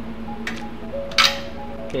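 Background music plays over a faint click, then a single sharp crack about a second in as a 17 mm deep-well socket on a ratchet breaks the dirt bike's steel oil drain plug loose.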